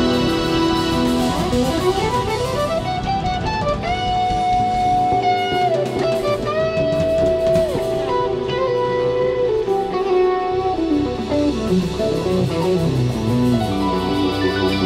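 Live jazz quintet: an electric guitar leads with quick rising runs and long held notes that bend downward, over bass, drums and keyboards.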